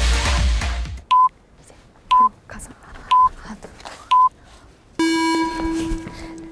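Electronic countdown sound effect: four short, high beeps one second apart, then a longer, lower buzzing tone, signalling the start of a 40-second timer. The tail of electronic background music stops about a second in.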